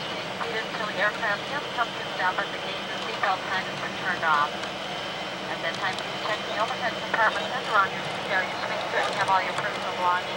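People talking over the steady hum and constant high whine of an airliner's cabin as it taxis after landing.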